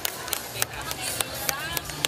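Irregular sharp claps and knocks, several a second, with faint voices between them.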